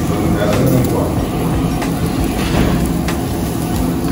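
Busy Korean barbecue restaurant: a steady low rumble and indistinct voices, with meat sizzling on the tabletop grill.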